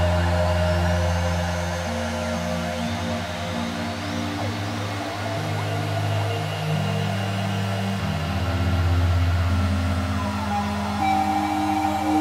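Ambient electronic music from a Eurorack modular synthesizer. A low bass drone and sustained chord tones step to new notes about three and eight seconds in, while thin high glides sweep upward near the start and again around four seconds in.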